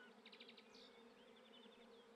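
Faint bee buzzing, a steady low drone, with a couple of brief trills of quick high chirps.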